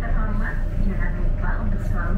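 Onboard public-address announcement in Indonesian, a voice saying 'pelanggan yang terhormat, jangan lupa untuk selalu melakukan check…' (dear passengers, don't forget to always check…), over the steady low rumble of the moving vehicle.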